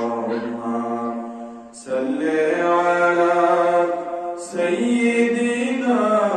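A man chanting in long, drawn-out melodic phrases. One phrase fades out just before two seconds in, then a long held phrase follows, a brief break, and another begins.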